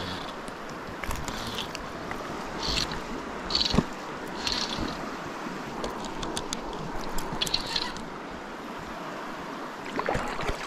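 River current rushing steadily, with short splashes of water every second or so and a few light clicks.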